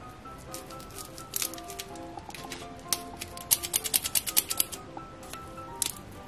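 Plastic lollipop wrapper crinkling and crackling as it is handled, in irregular sharp crackles with a dense run of them around the middle, over soft background music.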